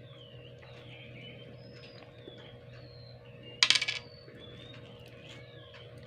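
A short, sharp metallic clink and rattle of a metal fork about three and a half seconds in, over a steady low hum and faint bird chirps.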